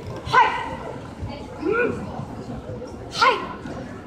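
A kung fu performer's short, sharp shouts during a form, three of them about a second and a half apart, each rising and falling in pitch.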